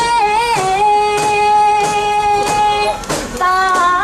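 Festival music: a high melodic line of long held notes that bend and waver, changing note near the end, with a few sharp strikes behind it.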